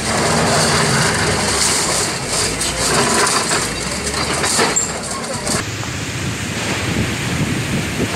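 Steady outdoor street noise, a rumbling hiss of traffic and wind, with faint voices; the sound shifts slightly about two-thirds of the way through as the scene changes.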